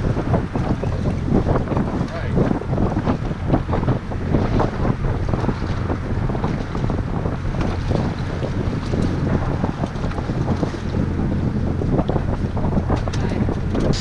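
Wind buffeting the microphone on an open boat, steady and rough, over water lapping and splashing around the hull.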